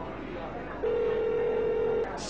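A steady electronic beep at one mid pitch starts just under a second in and holds for about a second.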